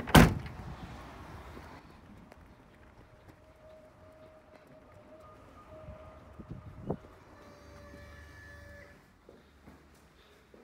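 A Renault Mégane's tailgate slammed shut: one loud, sharp thunk right at the start that dies away over a second or two.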